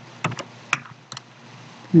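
Computer keyboard being typed on: about half a dozen separate keystroke clicks at uneven spacing, then a pause.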